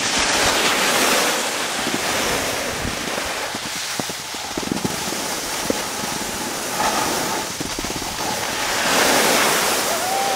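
Snowboard sliding and scraping over packed snow, a steady rushing hiss that swells twice, about a second in and near the end, with wind on the microphone.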